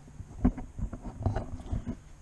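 A few dull knocks and bumps, roughly one every half second, over a faint low rumble: handling noise as fishing rods and gear are moved about in the boat's rod holders.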